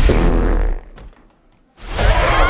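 Cartoon gas-release sound effect from a small spherical device spewing gas: a loud, noisy gush that fades out within the first second. A moment of quiet follows, then loud sound cuts back in abruptly at the very end.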